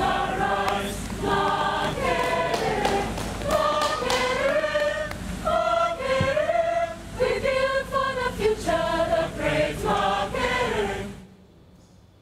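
A choir singing, the voices moving between held notes; the singing cuts off suddenly about eleven seconds in.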